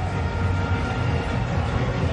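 Stadium crowd noise, a steady rumble of cheering following a boundary, with a few faint held tones above it.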